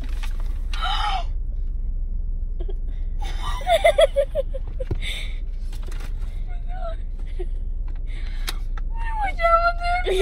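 A girl gasping and whimpering in excited disbelief, with a quick run of short broken cries about four seconds in, over the steady low hum of a car cabin.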